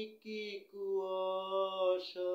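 A man singing unaccompanied, holding long steady notes with a short break for breath near the start.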